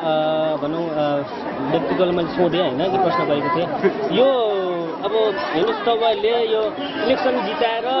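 Speech only: a man talking continuously into an interviewer's microphone.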